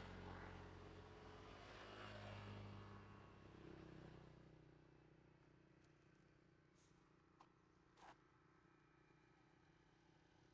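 Very faint low hum of a distant engine, fading away after about four seconds into near silence, with two faint clicks near the end.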